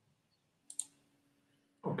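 Two quick, faint clicks a little under a second in, otherwise near silence.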